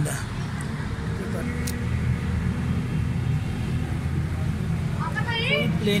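Suzuki Alto 1000cc VXR carburetted engine idling steadily with its rocker cover off, a low even hum. The mechanic finds its tappet clearances fully closed, which he ties to the car's heavy petrol consumption.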